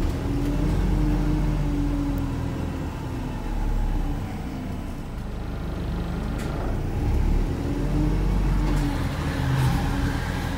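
Volvo B5LH hybrid double-decker bus driving on its four-cylinder diesel engine, heard from inside the passenger cabin: a steady low rumble with an engine note that rises and falls as the bus speeds up and eases off.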